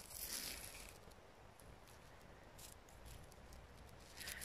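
Mostly near silence, with a brief faint scratchy rubbing in the first second: gloved fingers rubbing sand and grit off a small dug-up coin.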